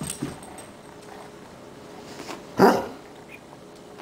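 A basset hound gives one short bark about two and a half seconds in.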